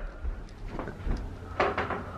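Footsteps and low rumbling handling noise from a handheld camera being carried through a house, with a few soft knocks and a louder clatter about one and a half seconds in.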